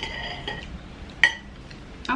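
Metal cutlery clinking against dishes twice, each strike ringing briefly; the second, a little over a second in, is the louder.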